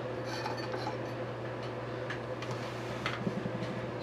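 A few faint, scattered clicks and light clinks of a small LED circuit board and its wires being handled in the fingers, over a steady low hum.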